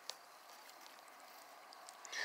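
Near silence: a faint steady hiss, with one faint click at the very start.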